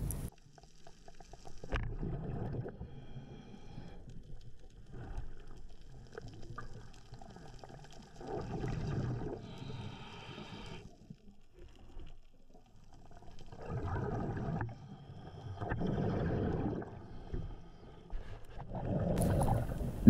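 Muffled underwater noise around a diver swimming along the seabed, swelling and fading every few seconds with his movement and breathing.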